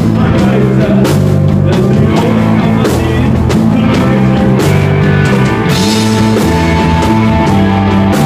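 A rock trio playing live: electric guitar, bass guitar and drum kit in a loud, continuous psychedelic post-punk song, with held bass notes that change every second or so under a steady run of drum and cymbal hits.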